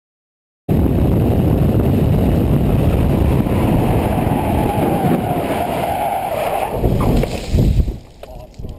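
Steady road and wind rumble from a moving vehicle, heard through a dashcam microphone. It starts abruptly about a second in and breaks into uneven knocks near the end.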